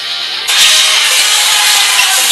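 Background guitar music ends and, about half a second in, loud basketball-arena crowd noise cuts in abruptly as a steady, dense roar.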